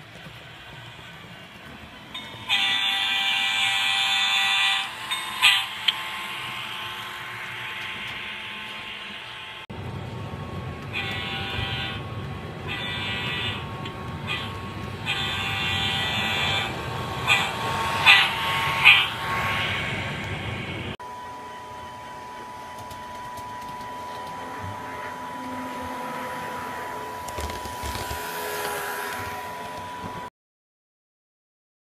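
Sound-equipped HO scale diesel locomotive's speaker blowing its horn: a long blast a few seconds in, two short ones after it, and another series of blasts in the middle, over a low engine rumble. A steadier hum follows in the last third.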